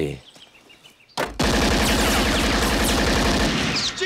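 Vintage motor car engine on the film's soundtrack, running with a rapid, even chugging of about twenty beats a second. It starts abruptly about a second in and stops just before the end.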